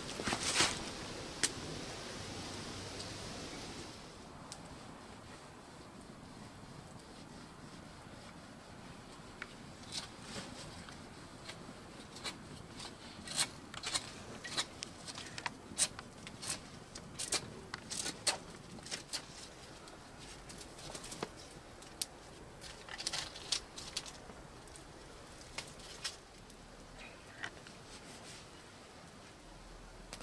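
Small twig-and-stick campfire crackling, with irregular sharp snaps and pops that come thickest in the second half. A soft steady hiss fills the first few seconds.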